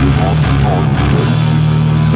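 Improvised heavy rock recorded on four-track tape: a sustained low bass note that shifts pitch about a second in, with short wavering notes above it.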